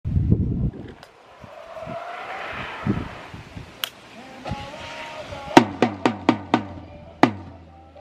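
A ski jumper's skis running down the inrun track with a rising hiss, then, after the landing, a quick run of about five sharp claps, some four a second, with one more a moment later.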